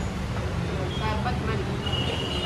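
Steady low rumble of street traffic, with a faint thin high tone near the end.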